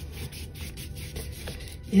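Paintbrush laying yellow acrylic paint in repeated up-and-down strokes across the painting surface, a soft, scratchy brushing.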